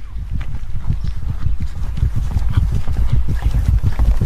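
Sound effect of horses' hooves: a loud, fast, continuous run of hoofbeats.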